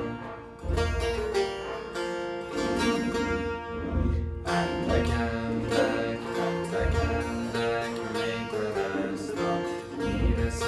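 Setar, the Persian long-necked lute, being played: a melodic run of metal-string notes plucked in quick succession, each starting sharply and ringing on, with a higher note sounding steadily underneath much of the phrase.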